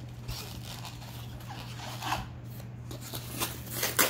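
Rustling and crinkling of a snack package being handled, in several short scrapes, the loudest near the end, over a steady low hum.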